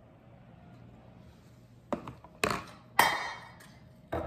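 Kitchenware clinking: after a quiet stretch, three sharp knocks come about half a second apart from halfway in. The last and loudest rings on briefly, like a metal bowl being set down or handled on a stone counter.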